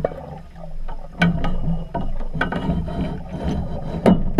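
Metal scaffold tubing clicking and knocking underwater as a scuba diver handles aluminium cross-bracing pipes: a few sharp ticks spaced about a second apart over a steady low hum.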